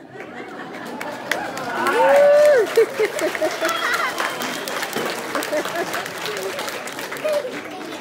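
Audience laughing and applauding, with cheering voices; it swells to its loudest about two seconds in, and the claps and laughter then go on more quietly.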